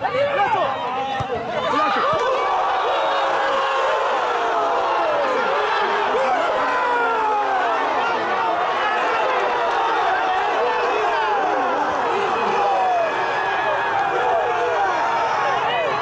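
Football spectators shouting and cheering with many voices at once after a goal. The noise swells about two seconds in and stays loud.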